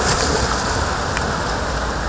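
Pool water splashing and churning as a swimmer kicks and strokes close by at the wall, a steady wash of splashing with a sharper splash right at the start.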